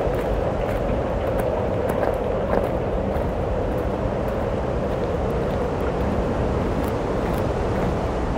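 A steady rushing noise at an even level throughout, with faint light ticks over it.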